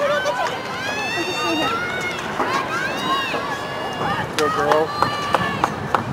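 Several voices shouting and cheering in long, high calls, with a few sharp claps or knocks from about four seconds in.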